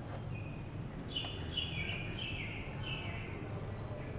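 A bird calling: a quick run of about five whistled notes, each sliding downward. Over it come a click and two short high beeps from the analyzer keypad as an arrow key is pressed, above a steady low room hum.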